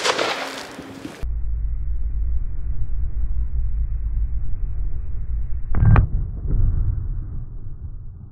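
The 7.62 mm FN FAL rifle shot dies away over the first second, echoing across the range. Then comes a slowed-down, muffled soundtrack: a low steady drone and, about six seconds in, one loud deep boom as the bullet hits the bottle of foaming mix, followed by a fading tail.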